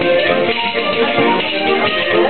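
Live folk music played by a group in the room, with tambourines among the instruments, going on steadily.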